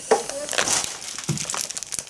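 Clear plastic bags crinkling as they are handled and picked up, in irregular rustles.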